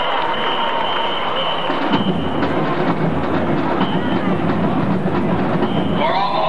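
High school marching band beginning to play about two seconds in, a dense mass of band sound coming in over the stadium background.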